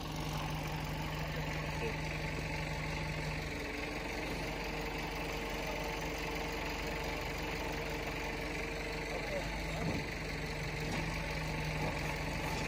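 Engine of a truck-mounted aerial work platform running steadily to power its boom, a low even hum whose tone shifts about three and a half seconds in and shifts back near ten seconds.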